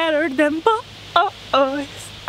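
Speech only: a woman's voice in several short phrases.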